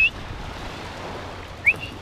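A person whistling to call a dog: two short, rising whistles, one at the very start and one near the end. Steady wind and surf noise lies underneath.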